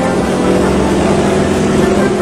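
Yak-52's nine-cylinder radial engine and propeller running steadily, heard from inside the cockpit.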